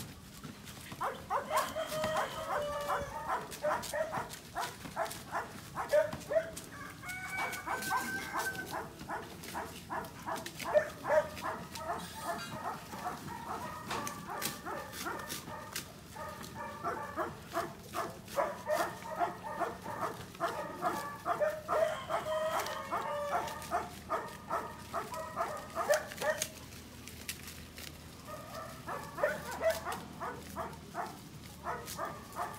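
Puppies yapping and barking in play, short high barks in quick runs of several a second, with brief lulls and a longer pause near the end.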